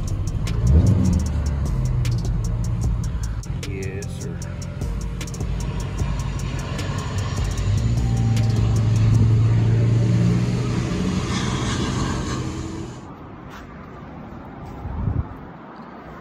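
Inside a slowly moving car: the engine is running low, with music playing from the car stereo over it. Both cut off suddenly about thirteen seconds in, as the car is switched off.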